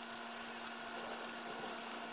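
Sandpaper rubbed by hand over a small PVC pipe end cap in quick, scratchy back-and-forth strokes, roughening its surface so hot glue will grip.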